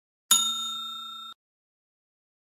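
A single bell-like ding sound effect that rings for about a second and then cuts off abruptly. It is the chime of a notification-bell icon being clicked.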